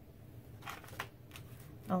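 Soft rustling and scraping of cardstock being handled on a desk, with a small sharp tick about a second in.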